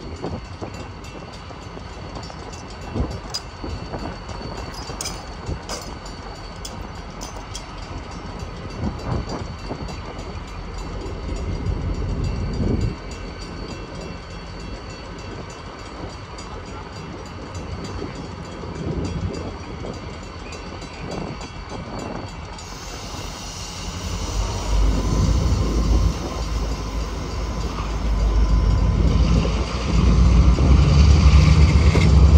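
Diesel-electric road-switcher locomotives idling with a steady low rumble and a few scattered knocks. From about 24 seconds in, the engines throttle up and the rumble grows louder as the locomotives start to pull forward.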